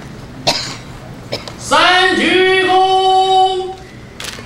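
A ceremonial officiant's drawn-out, sung-out bow command at a funeral rite, most likely the third call '三鞠躬' ('third bow'). The voice glides up and is held on one note for about two seconds in the second half. A short cough-like sound comes about half a second in.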